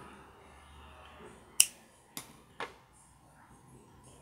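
Small scissors snipping off excess crochet thread: one sharp snip about a second and a half in, followed by two fainter clicks of the blades.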